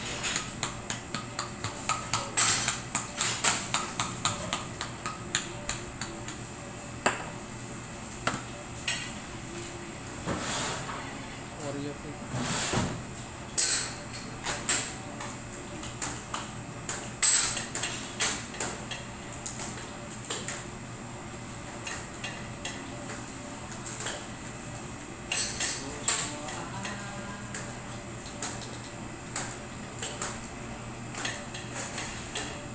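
Kitchen utensils clinking and tapping against dishes and a cake turntable: irregular sharp clicks, busiest a couple of seconds in and again past the middle, over a steady low hum.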